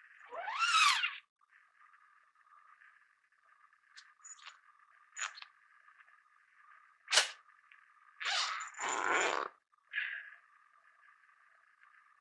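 A tent zipper pulled shut in the first second, a quick rasp rising in pitch. Later come a sharp click, then about a second of scraping and rustling as a tent peg is worked out of the sandy ground at the base of the tent.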